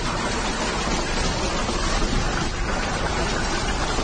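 Large hailstones pelting down on a lawn and paving slabs in a heavy hailstorm: a dense, steady hiss of countless impacts.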